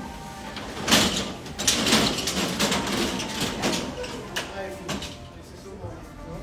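Indistinct voices in a room, with a loud sharp noise about a second in and a few more clatters or rustles just after.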